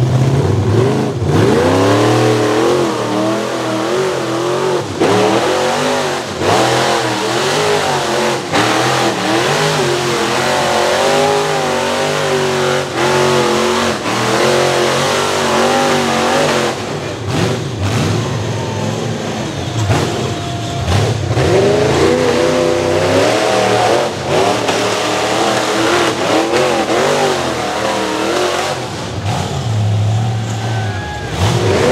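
Rock bouncer's engine revving hard and unevenly as it climbs, its pitch rising and falling over and over as the throttle is worked. Several sharp knocks break in along the way.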